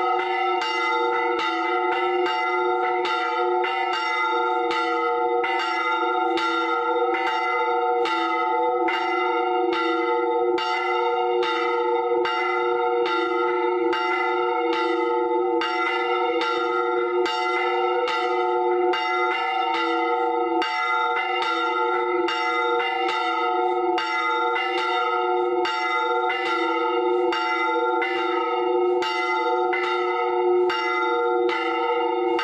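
Church bells ringing steadily, with even strikes about one and a half times a second over a sustained hum of several overlapping bell tones.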